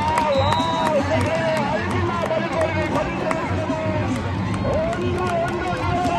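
Spectators shouting and cheering over a goal, loud and continuous, with music in the mix.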